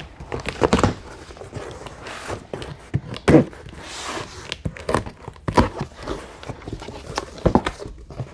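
Cardboard box being cut open with a box cutter and its flaps pulled apart: irregular scrapes, tearing and knocks of cardboard, with a longer rustle about four seconds in.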